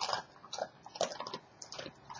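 A dog chewing a crunchy Fromm Parmesan cheese biscuit treat: a string of short, irregular crunches.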